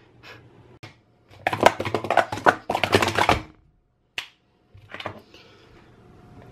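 Plastic sport-stacking cups clattering in a rapid run of clicks for about two seconds, followed by a few single taps.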